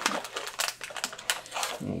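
A small cardboard blind box being handled with gloved hands, giving a quick run of light clicks and rustles.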